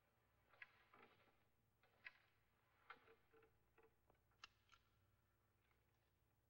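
Near silence broken by about eight faint, irregularly spaced clicks and light knocks, the sharpest about four and a half seconds in.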